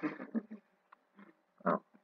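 A man's voice making short wordless sounds: a cluster of bursts at the start and another near the end.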